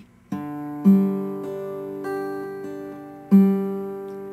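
Electric guitar fingerpicking an open G chord, its notes ringing and overlapping. A strongly picked note comes about a second in and another near the end.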